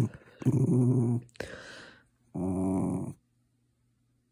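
A cocker spaniel growling in two low, steady grumbles under a second each, with a short breathy huff between them.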